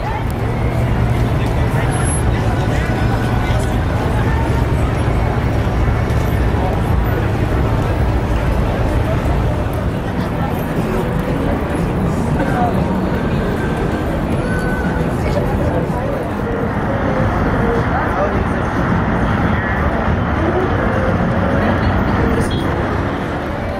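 Busy city street ambience: steady road traffic with a crowd of voices chattering, and a low engine hum through roughly the first third.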